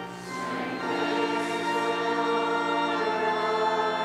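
A choir singing a hymn refrain in long held chords, after a brief dip in loudness at the start between phrases.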